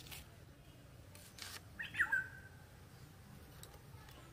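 A bird gives a short call about two seconds in, a quick falling chirp, over a faint low background hum. A brief scraping noise comes just before it.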